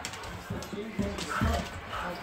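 Heavy footfalls of someone running on a hard indoor floor, a few separate thumps about half a second apart, with faint voices in between.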